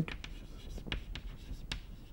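Chalk writing on a chalkboard: a few short, sharp taps and light scratches as words are chalked out.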